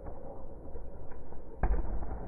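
A handball shot: a single sharp smack of the ball on the hall floor about one and a half seconds in, echoing briefly in the sports hall.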